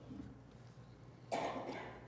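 Quiet room tone, then about one and a half seconds in a man's single short, soft cough that fades within half a second.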